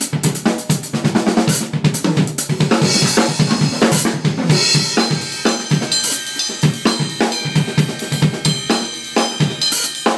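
Fast, dense drum-kit solo in gospel-chops style: rapid strokes on snare, toms and bass drum, with several cymbal crashes along the way.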